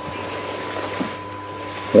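Steady background hum and hiss with a faint constant high tone; no clear event stands out.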